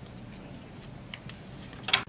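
A few light clicks of a car seat's metal harness splitter plate and strap hardware being handled as the harness straps are slipped off it, with a sharper click near the end.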